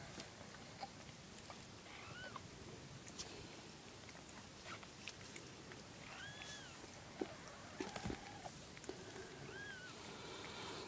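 Newborn kittens mewing faintly: three short, thin, high-pitched mews, each rising and falling, about two, six and a half and nine and a half seconds in, with a few soft rustles and clicks between.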